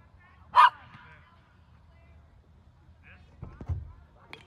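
One short, loud bark-like call about half a second in, followed near the end by a few low thuds.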